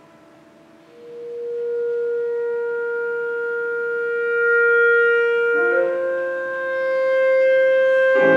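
Clarinet holding one long note that swells in from about a second in, over the fading ring of a piano note, then moving up a step near six seconds and holding again.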